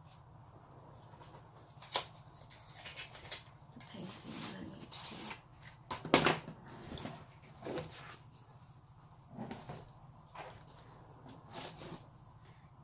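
Craft materials handled on a tabletop: a box of soft pastels is set down and opened, giving scattered knocks, clicks and rustles, the loudest knock about six seconds in. A steady low hum runs underneath.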